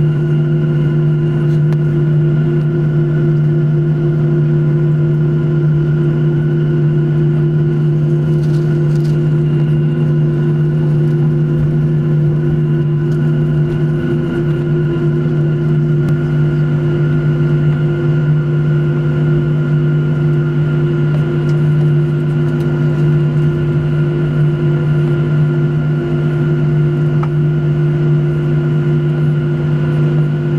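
Steady cabin drone of a Boeing 737-900 taxiing, its jet engines at idle: a constant low hum with a few fainter steady tones above it.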